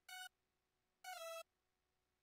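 Synth lead notes from FL Studio, bright and buzzy. One brief note sounds at the start, then about a second in a longer note slips down a step in pitch.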